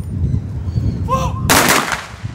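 A single volley of rifle fire from a police firing party, heard as one sharp crack about one and a half seconds in that lasts about half a second. It is a ceremonial gun salute at a funeral.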